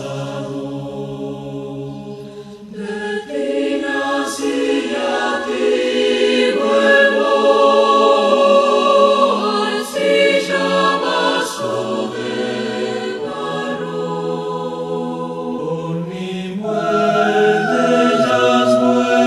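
Mixed choir of men's and women's voices singing in sustained multi-part harmony, the chords shifting every few seconds. It grows louder about three seconds in and again near the end.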